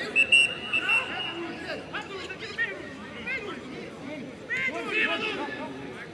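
A single whistle blast, one steady high note lasting about a second, just after the start, amid players shouting to each other across a football pitch during a training scrimmage.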